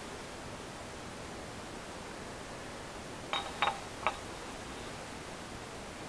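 Quiet, steady hiss of room tone, broken about three and a half seconds in by three light, short clinks as the sump pump's oiled armature and parts are handled and fitted into the pump housing.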